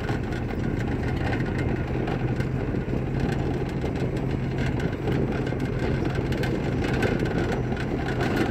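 Pickup truck driving along a dirt track, heard from its open load bed: a steady engine hum under continuous road and wind noise, with small knocks and rattles throughout.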